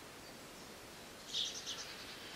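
Faint background hiss with a bird chirping briefly: a quick run of high chirps about a second and a half in.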